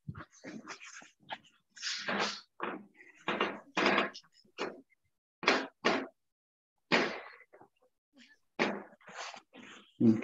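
Short scraping and knocking handling sounds of a utensil and food being worked on a serving plate, a string of brief bursts that cut in and out through a video-call microphone.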